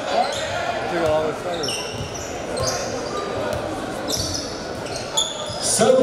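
A basketball being dribbled on a hardwood gym court, with short high sneaker squeaks several times as players move.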